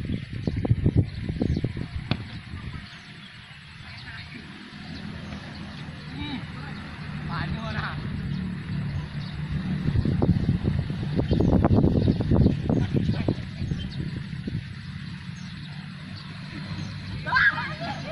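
Wind buffeting the microphone in an irregular low rumble that swells in gusts, loudest about two-thirds of the way through. Scattered distant shouts from the footballers come through a few times, one near the end.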